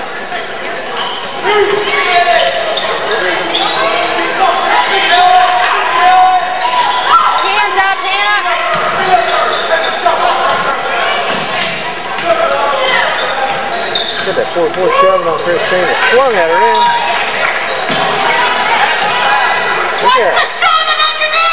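A basketball bouncing on a hardwood gym floor among many overlapping voices and shouts from players and spectators, echoing in a large gymnasium.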